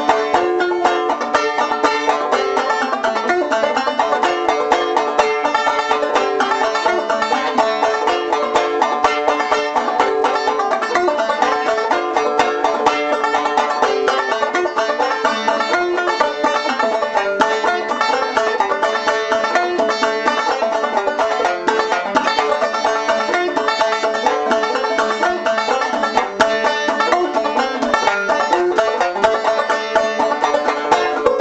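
An old tenor banjo, probably from the 1920s and fitted with a new head, played solo with quick, dense picked strokes that run on without a break.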